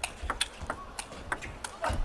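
Table tennis rally: the ball knocks sharply off bats and table, about three times a second, in a quick back-and-forth exchange.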